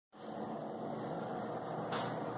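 Steady background room noise, an even hiss with no distinct events, starting abruptly just after the beginning.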